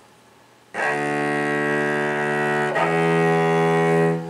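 Cello bowed slowly on the C string, two long notes, starting about 0.7 s in: D with the first finger, then about two seconds later the E a step above it, played with an extended second finger.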